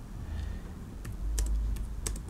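Keystrokes on a computer keyboard: a handful of separate key clicks, starting about a second in.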